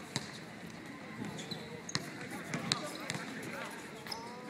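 A basketball bouncing on a hard court, with a few scattered sharp bounces amid indistinct voices of players and onlookers.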